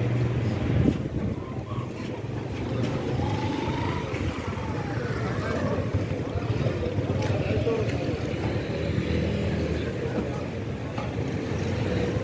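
Busy street ambience: motorcycle and motor-vehicle engines running, with a low engine hum strongest about a second in and again near the end, and indistinct voices of passers-by underneath.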